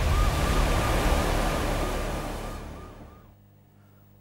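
Sound effect of a news segment's title sting: a dense rush of noise with a faint wavering siren-like tone, fading out over about a second near the end.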